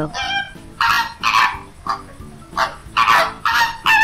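Flamingo flock calling: a series of short, nasal, goose-like honks, about two a second.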